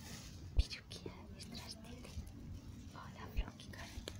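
A person whispering softly, with two soft low thumps, one about half a second in and one near the end.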